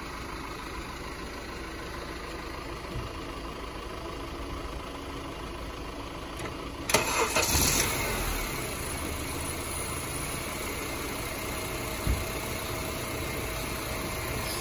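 2007 Honda Civic's 1.8-litre four-cylinder engine cranks briefly and starts about halfway through, then settles into a steady idle.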